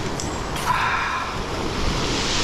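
Surf washing on a shingle beach with wind on the microphone, a steady rushing noise, with a short breathy sound about half a second in.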